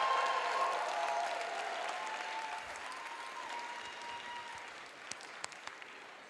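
Audience applauding, the applause dying away over the course of several seconds until only a few scattered claps remain near the end.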